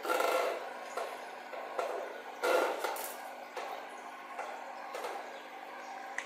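Irregular knocks and rubbing noises, a few in a row, the loudest right at the start and another about two and a half seconds in.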